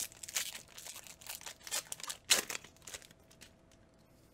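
Foil booster pack wrapper of a Magic: The Gathering pack crinkling and tearing as it is ripped open: a quick string of crackles over about three seconds, the loudest a little past two seconds in.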